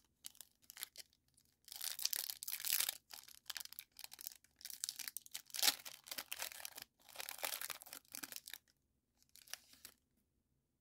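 Foil trading-card pack wrapper being torn open and crinkled by hand, in several separate bursts of rustling and tearing with short pauses between.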